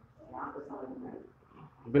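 Quiet speech, with louder speech starting right at the end.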